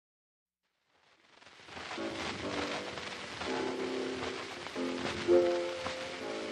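Old acoustic gramophone recording from 1902: disc surface hiss and crackle fade in after about a second, then the thin, boxy sound of the accompaniment's opening chords starts.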